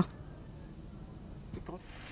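Quiet outdoor background ambience: a steady low rumble with faint hiss, with a brief faint sound about a second and a half in.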